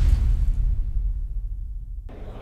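Deep boom sound effect of a graphic transition, its low rumbling tail fading out over about two seconds.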